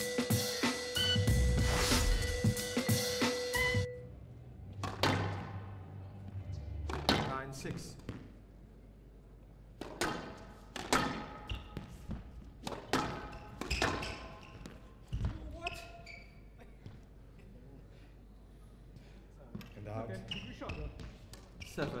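Drum-kit music for about the first four seconds, then stops. After that comes a squash rally on a glass court: irregular sharp impacts of the ball off racket, walls and glass, each ringing in the hall.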